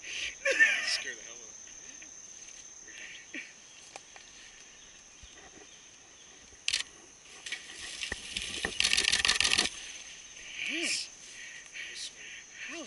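Steady high-pitched drone of insects in summer woodland. About nine seconds in comes a loud, rapid scraping, rustling burst lasting about a second.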